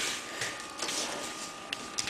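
Quiet room tone with a faint steady high-pitched hum and a few light clicks from handling the camera.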